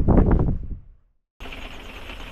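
A short loud rumbling noise that dies away in the first second, then a cut. After it, the steady hiss of heavy rain on the motorhome.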